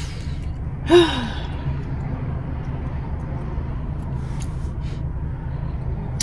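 A woman sighs once, about a second in: a short breathy exhale that falls in pitch. A steady low hum from inside the car runs underneath.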